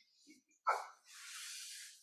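A person's drawn breath, a soft hiss lasting about a second, taken just after a hesitant spoken "I" and before speaking again.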